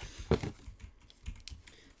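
Trading cards being handled: a few short clicks and brushing sounds as cards and their plastic holders are shuffled and set down, the sharpest about a third of a second in.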